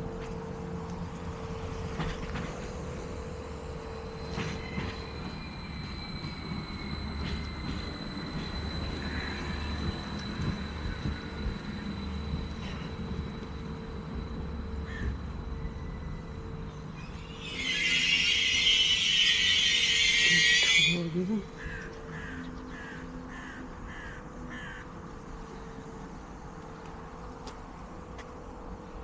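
Train sounds beside a railway line: a steady low rumble with a faint continuous tone, broken about two-thirds of the way through by a loud hiss lasting about three seconds. Just after the hiss, a crow caws about five times in quick succession.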